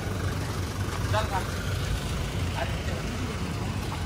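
Steady low rumble of a Toyota Innova MPV rolling slowly past, with a few brief voices of people around it.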